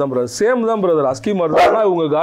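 A man talking.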